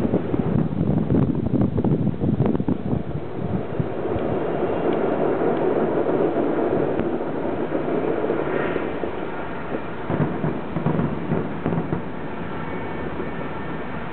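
Fireworks display: a continuous rolling rumble of overlapping booms and cracks, densest in the first three seconds.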